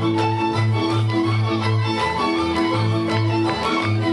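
Hungarian folk dance music: a bass note sounding on each beat under held chords and a melody line, in a steady dance rhythm.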